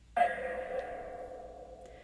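A single held electronic tone from a spirit box, starting sharply and fading slowly over about a second and a half. It is heard as the device's reply to a request to say "Alex", a reply taken as an almost-successful try.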